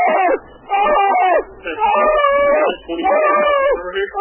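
Four high wailing cries in a row, each about a second long with short breaks between, the pitch bending slightly up and down.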